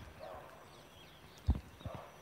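Faint background with two low knocks from the camera being moved and handled. The first and louder knock comes about a second and a half in, and a smaller one follows just before the end.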